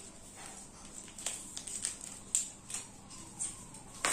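Scattered light clicks and taps from thin laser-cut plywood kit sheets and pieces being handled on a tiled floor.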